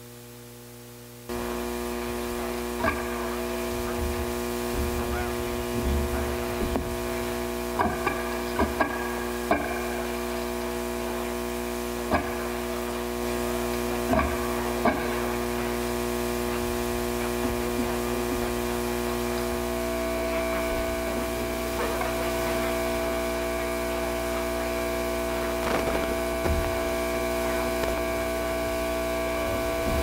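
Amplified electronic drone: a steady cluster of held tones over mains hum, switching on suddenly about a second in. Scattered clicks and pops run through it, and a new higher tone joins about two-thirds of the way through.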